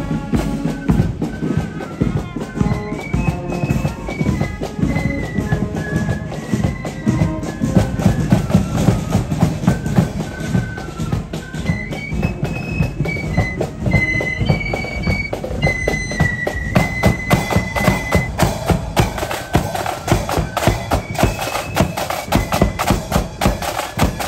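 Marching flute band playing a tune: a high melody on flutes over rapid, continuous drumming.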